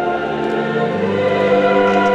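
Choir singing sustained notes, moving to a new chord about a second in.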